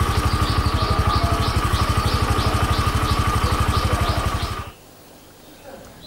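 Motorcycle engine idling with a steady, fast, even pulse, a repeating high chirp about twice a second over it. It cuts off suddenly a little before the end, leaving only faint background hum.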